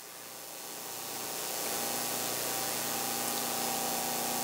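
Steady hiss of room noise with a faint hum, swelling over the first two seconds and then holding level.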